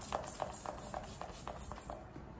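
Finger-pump mist spray bottle of prep-and-prime face spray being pumped over and over, short spritzes at about four a second.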